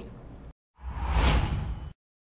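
A single whoosh sound effect for a TV news station-logo transition: a rush of noise about a second long that swells and then cuts off abruptly.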